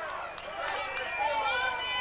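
Voices between songs: a man talking, with several crowd voices overlapping, and no music playing.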